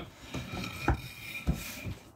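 A hand rubbing and sliding over a wooden acacia countertop, with a few light knocks on the wood about half a second apart.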